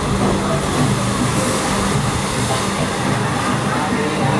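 Log-flume ride boat plowing through the splash pool after its drop. A loud, steady rush of churning water with a low hum underneath.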